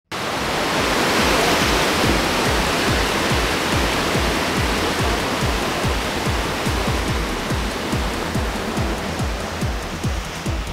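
Debris flow of mud and boulders surging down a mountain torrent channel: a dense rushing noise that sets in abruptly, is loudest in the first couple of seconds and then eases slightly. Music with a steady low beat runs underneath and grows clearer toward the end.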